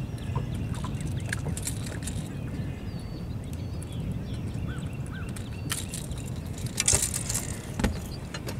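Handling noise from unhooking a caught bass on a boat deck: clicks, knocks and rattles of fish and tackle, loudest in the last two seconds, over a steady low rumble.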